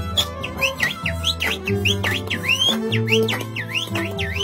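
Andean harp and violin playing a carnival tune, with held bass notes from the harp. Over it comes a fast run of shrill swooping whistles, several a second, each dipping and rising in pitch.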